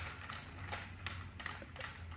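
Screwdriver driving a screw by hand into a metal projector-screen frame rail: a sharp click at the start, then a few faint, irregular clicks.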